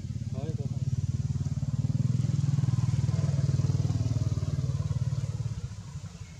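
A small engine running with a fast low pulse, growing louder over the first few seconds and fading away near the end.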